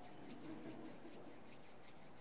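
Faint rustling or rubbing in quick, repeated strokes over quiet room tone.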